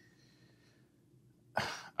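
A man's single short cough near the end, after about a second and a half of near silence.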